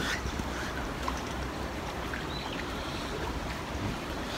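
Steady wind rumble on the microphone over a faint hiss of flowing river water.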